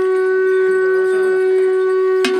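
A horn blown in one long, steady held note.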